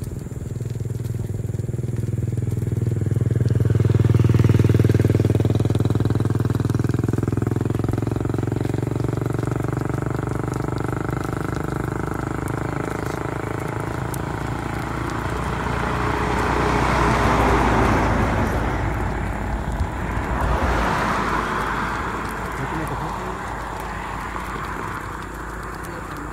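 Highway traffic passing close by. A heavy vehicle's engine hum swells and fades over the first several seconds, then two more vehicles rush past in the second half, over a continuous road rumble.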